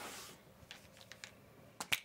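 Small objects being handled by hand over an open cardboard box: a few faint clicks and taps, then two sharp clicks close together near the end.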